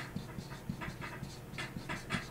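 Writing on a chalkboard: a string of short, faint scraping strokes as words are written.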